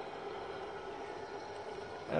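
Older Ecotec A3 15 kW pellet burner running steadily at 90 percent power: an even whir of its blower and burning pellets.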